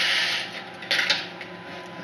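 Vertical window blinds being drawn open with their wand, the slats rattling and sliding along the track; the rattle dies away about half a second in, followed by a brief clatter just before one second.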